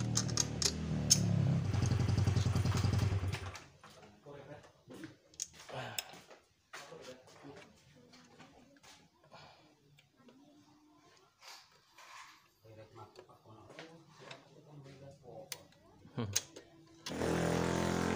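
A motorcycle engine runs for the first three and a half seconds and then cuts off. After that come faint scattered clicks and taps of hands and a tool fitting the brake cable end onto the rear drum-brake arm of a Honda Beat scooter. A louder steady noise starts again just before the end.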